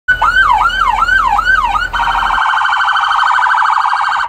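Electronic police siren on a Lenco BearCat armored vehicle, loud, first sounding a yelp that rises and falls about twice a second, then switching a little under two seconds in to a much faster warbling trill.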